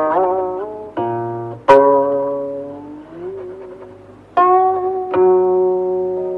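Slow traditional Chinese instrumental music on a plucked string instrument: a handful of single notes, each left to ring and fade, some bent in pitch after the pluck.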